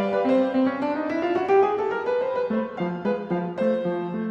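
Background piano music: a rising run of notes through the first half, then a steady pattern of repeated notes.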